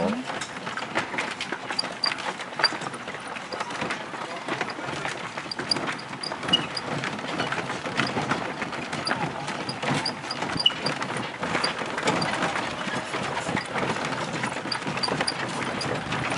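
Horse-drawn carriage on the move: hooves clip-clopping and the carriage rattling, a steady run of short irregular knocks and clatters.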